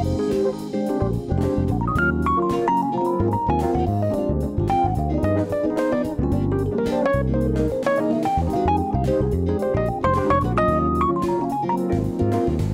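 Instrumental TV series theme music: a guitar melody over bass, with a steady beat.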